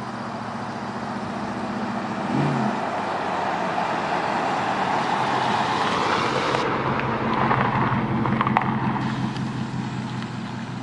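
Pickup truck driving past close by: its engine and tyre noise swell as it approaches, are loudest as it goes by, then begin to fade as it drives away.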